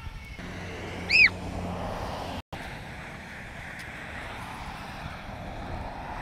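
Wind buffeting the microphone over a low rumble of passing traffic. About a second in comes one short, loud, high-pitched squeal that rises and falls. The sound drops out for an instant just before the middle.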